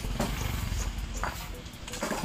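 Wooden straightedge dragged across bedding sand to screed it level, a soft scraping with a couple of faint light clicks.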